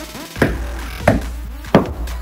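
Three sharp knocks, about two-thirds of a second apart, from a plastic toy hockey stick swung at a rubber band ball on a carpeted floor. Music plays underneath.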